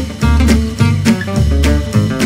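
Instrumental jazz music with guitar and drums, playing a steady beat.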